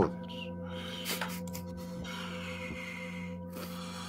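Ambient background music: a steady drone of sustained, unchanging tones. A soft breathy hiss comes in about halfway through.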